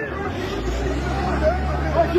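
Several people talking and calling out, joined about half a second in by a steady low engine hum.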